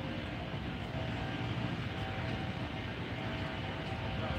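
Steady low rumble of distant engine noise, with a few faint steady tones over it.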